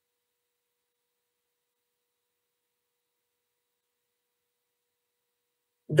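Near silence: dead air with no audible sound, then a woman's voice starts speaking at the very end.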